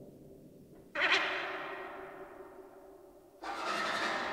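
Modern chamber-ensemble music: two sudden loud struck attacks, about a second in and again near the end, each ringing and fading away over a faint low held tone.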